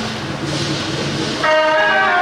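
Street noise, then about a second and a half in a loud wind instrument of the procession music comes in, holding steady notes.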